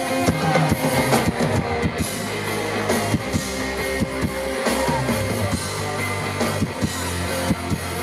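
Live rock band playing an instrumental passage: electric guitar over a drum kit with steady drum hits and a sustained bass line, amplified through a concert PA.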